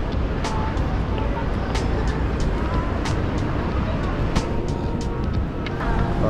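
City street ambience: a steady rumble of road traffic with faint distant voices.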